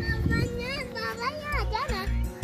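A young girl's high voice calling out in play, its pitch sliding up and down. Low rumbling thumps come in near the end.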